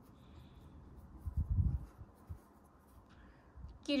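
Faint rubbing and rustling of hands working a metal crochet hook through acrylic yarn, with one dull low bump of handling noise about a second and a half in.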